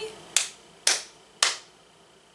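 One person clapping her hands three times, evenly spaced about half a second apart.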